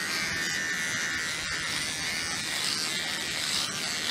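Electric hair clippers running with a steady buzz as they are drawn over a man's closely shaved scalp, cutting the stubble.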